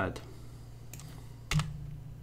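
A steady low hum with one sharp click about halfway through, from a key or button being pressed at the computer, and a couple of fainter clicks before it.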